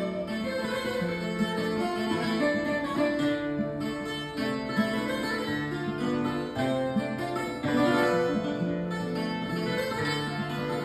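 A Portuguese guitar and a classical guitar (viola) playing an instrumental fado passage together. Plucked melody notes sound over a stepping bass line.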